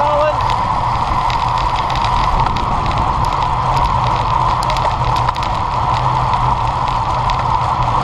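Steady rush of wind over a bike-mounted action camera's microphone, with tyre and road noise, from a road bike riding at speed in a group.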